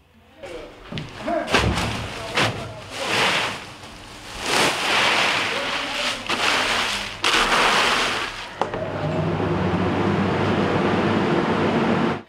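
In-shell peanuts being shovelled in a drying bin: a rushing rattle of shells in several bursts. From about nine seconds in, a steady machine hum takes over.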